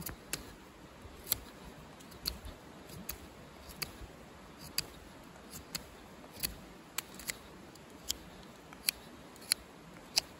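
ESEE CR 2.5 knife whittling a stick into a tent peg: about fourteen short, sharp snicks, irregularly spaced at roughly one a second, as the blade bites into and shaves the wood.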